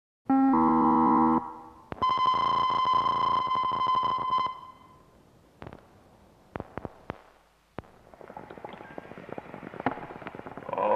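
Electronic, synthesizer-like tones: a loud held chord starting a moment in and lasting about a second, then a held high tone from about two to four and a half seconds. After that come a few sharp clicks and a rising noisy texture near the end.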